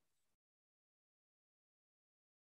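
Near silence: a gap with no sound.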